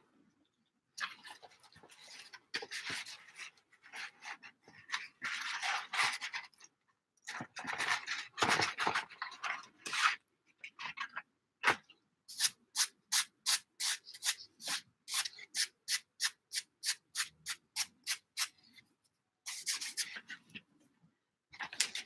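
Paper being handled and rubbed on a craft desk: irregular rustling and shuffling, then a run of quick, even strokes at about three a second lasting some six seconds, and more rustling near the end.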